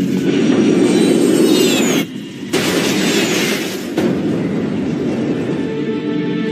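Jet airliner engines, a loud roar with a high whine falling in pitch, cut briefly about two seconds in and then back again. Low sustained music tones come in near the end.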